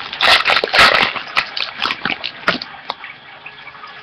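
Wrapper of a trading-card pack being torn open and crinkled by hand, busiest in the first second and a half, then a few sharp crackles and quieter handling.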